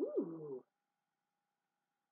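A woman's short wordless "hmm" lasting about half a second at the start, rising then falling in pitch: her reaction on sniffing a scented wax melt.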